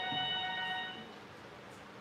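A steady electronic tone with several overtones, fading away about a second in.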